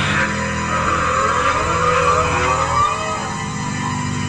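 Live rock band playing: a steady, heavy low bass line under several rising, sliding lead notes about midway through.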